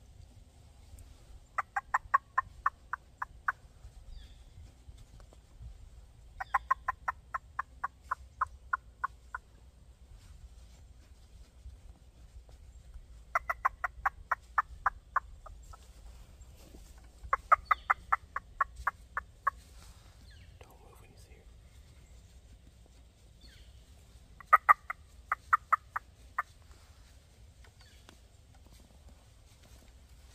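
A hand-held squirrel call imitating squirrel chatter: five bursts of rapid, evenly spaced chattering notes, each about two seconds long, a few seconds apart.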